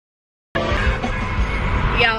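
Silence, then about half a second in the sound cuts in suddenly: a car's road and wind rumble heard inside the cabin, with music under it.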